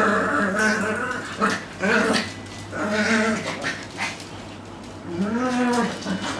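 Small dog giving a string of whining, yowling calls, about five of them, each under a second long, rising and falling in pitch.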